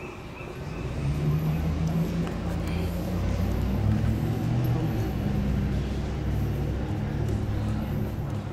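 A motor vehicle engine running close by: a low hum that comes up about a second in, shifts pitch a few times, and eases off near the end.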